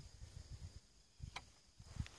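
Near silence: faint outdoor background with a single soft click a little past halfway.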